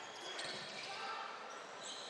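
Faint sound of a basketball game in an indoor arena: a steady crowd murmur, with a basketball bouncing on the court.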